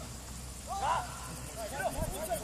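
Short shouted calls from people on a football pitch, one about a second in and a few more near the end, over a steady low rumble.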